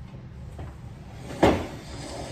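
A single loud knock against a wooden end table about one and a half seconds in, as its carved base is wiped with a cloth.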